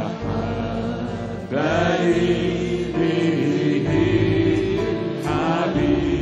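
Arabic Christian worship song: a man sings the melody over a band accompaniment with sustained held chords, each new sung line starting about a second and a half in and again near the end.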